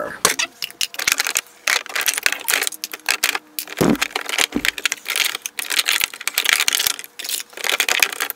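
Plastic skincare jars and bottles clattering against each other and against clear plastic drawer organizer trays as they are lifted out of a drawer. The sound is a run of quick, irregular clicks and knocks.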